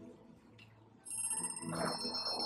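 A bell-like musical sting starts about a second in, after a very quiet first second: several high ringing tones held together, like chimes.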